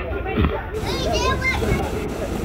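Young children's voices at play, high-pitched and wavering, over a steady low rumble.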